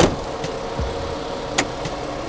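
Vehicle engine idling steadily, with a sharp click right at the start.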